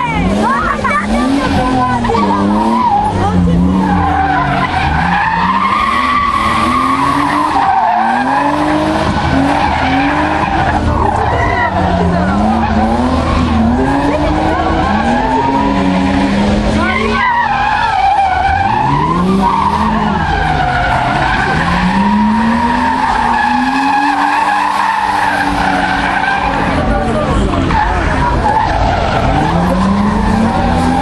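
Drift cars sliding through the course: engines revving up and down again and again in quick bursts over a continuous, wavering tyre squeal.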